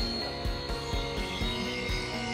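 Cordless dual-action polisher with a wool cutting pad running steadily on a painted panel, working cutting product into the paint. Background music with a steady beat plays alongside.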